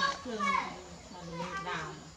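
Children's voices talking and playing.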